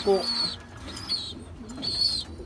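Racing pigeons cooing in a loft, with brief high chirps near the start and again near the end.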